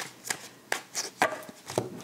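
A deck of tarot cards being shuffled and handled, with about six sharp card snaps and taps at uneven intervals as the clarifier cards are drawn.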